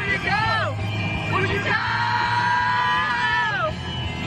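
Two women singing along in a moving car, carpool-karaoke style. Short sliding sung phrases come first, then a long held note from about two seconds in that falls away near the end, over the low rumble of the car.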